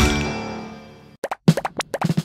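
Cartoon background music ending on a final struck note that fades away over about a second. It is followed by a quick run of short, plopping pops.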